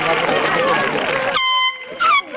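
Crowd cheering and shouting. About a second and a half in, a short blast from an air horn sounds: one steady tone lasting about half a second.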